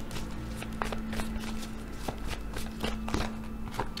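Tarot cards being shuffled and handled by hand: a scatter of short, soft card taps and flicks, over a faint steady low hum.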